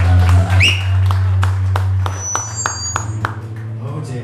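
Scattered clapping and a few whistles from a small audience at the end of a song, with a low steady hum from the stage that fades after about two seconds.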